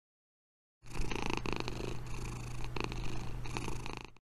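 A domestic cat purring close to the microphone, a steady low purr that starts about a second in.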